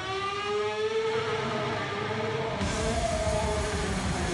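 Live rock music: a sustained electric guitar note slides up in pitch and is held. About two and a half seconds in, the rest of the band comes in with bass and drums.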